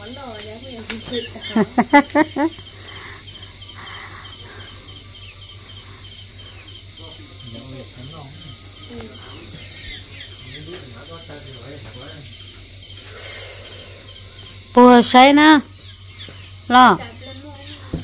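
Steady, high-pitched chorus of insects running on without a break, with a person's voice cutting in briefly about two seconds in and again near the end.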